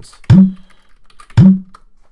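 Typing on a computer keyboard: faint key clicks and two heavy keystroke thumps about a second apart as a command is typed and entered.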